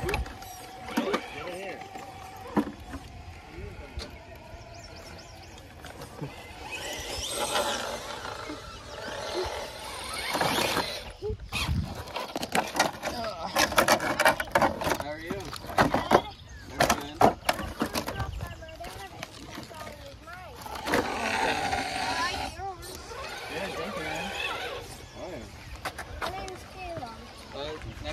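Radio-controlled rock crawler's small electric motor whining as it climbs, with indistinct voices in the background. A run of sharp knocks and clicks on rock comes about halfway through.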